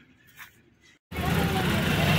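Faint quiet ambience with a small click, then, about a second in, an abrupt cut to loud street noise: road traffic with engines running and a continuous din.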